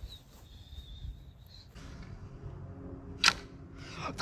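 Faint background, then a single short, sharp snap about three seconds in: one shot from a homemade stick longbow.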